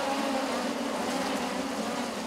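A full field of USAC midget race cars running together on a dirt oval just after the green flag: a steady drone of many engines at racing speed.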